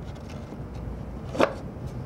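A single short wooden knock, about one and a half seconds in, as a plywood drawer front or back is slipped into its groove and seated against the drawer bottom during dry assembly, over faint room noise.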